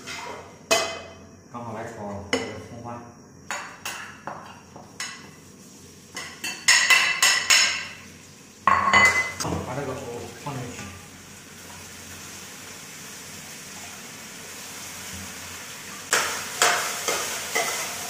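A metal spatula knocks and scrapes in a wok. A few seconds before the middle, ingredients go into hot oil with a sudden burst of sizzling, which settles into a steady frying hiss. Near the end the wok is tossed and stirred again with clattering.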